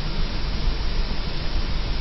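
Steady hiss with a low hum underneath: the noise floor of an old analogue camcorder videotape recording.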